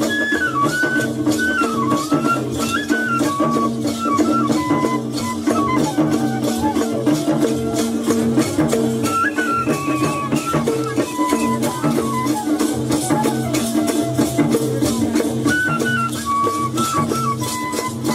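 Nepali folk music accompanying a Mayur (peacock) dance: a high, ornamented melody line over steady low held notes and a repeating drum beat, with a constant fast rattling or jingling on top.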